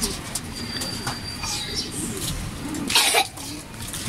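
Racing pigeons cooing low and softly, with a short noisy burst about three seconds in.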